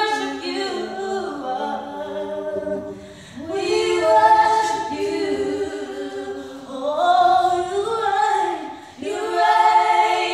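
Two young women singing a gospel song together a cappella, in long held phrases with brief breaks for breath between them.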